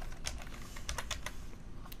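Typing on a computer keyboard: a short, irregular run of about ten key clicks as a short word is entered.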